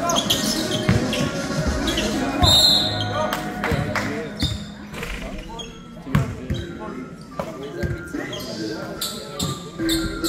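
A basketball bouncing on a wooden gym floor during a game, with repeated sharp bounces and players' voices echoing in a large sports hall.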